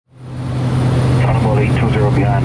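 Cessna 208 Caravan's single turboprop engine and propeller droning steadily in the cockpit, a loud even low hum that fades in over the first half second.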